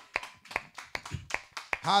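Hands clapping in a steady beat, about two and a half claps a second, as a church congregation claps along in worship.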